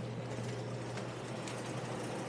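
Steady hum and fan noise of a walk-in cooler's refrigeration unit, unchanging throughout.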